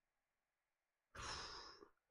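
A man's short breathy sigh, one exhale about a second in, after near silence.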